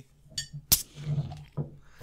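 Glass beer bottle being opened, with one sharp clink of the metal cap coming off about three-quarters of a second in.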